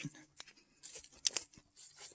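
Light footsteps crunching and rustling on a dirt forest trail, with a few short sharp clicks.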